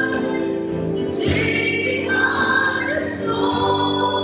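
Live worship song: several voices singing together in long held notes over a band with keyboard and acoustic guitar.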